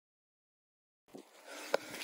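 Dead silence for about the first second, then faint outdoor background noise that starts abruptly, with a sharp click just before the end.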